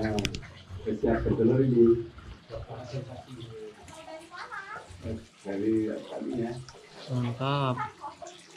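People talking indistinctly in several short stretches.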